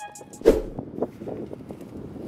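A single sharp thump about half a second in, then light knocks and rustling as items are handled in an SUV's open cargo area, over outdoor background noise.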